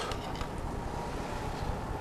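Steady background noise: an even hiss of room tone with no distinct sounds standing out.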